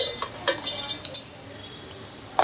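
Crumbled pieces of baked bati dough scraped out of a bowl into a stainless-steel grinder jar, a quick run of light clatters and rustles against the metal that dies down after about a second.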